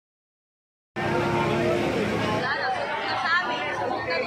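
Silence for about the first second, then a crowd of people suddenly heard talking and calling out over one another.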